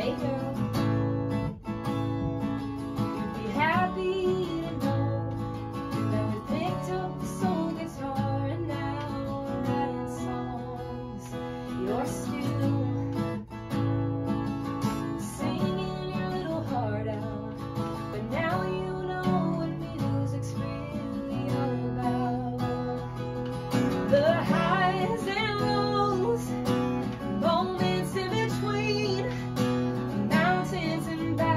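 Acoustic guitar strummed in steady chords, with a woman singing a song over it in phrases.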